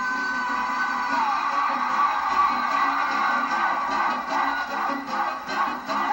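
Live concert music with a large stadium crowd cheering over it; a held sung note bends down and ends about a second in.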